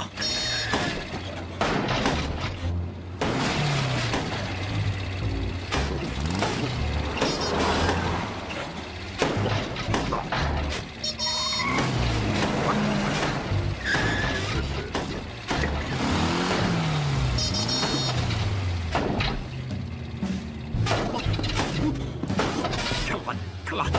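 Cartoon soundtrack: background music with a stepping bass line under car engine sound effects, with several rising and falling pitch glides near the middle.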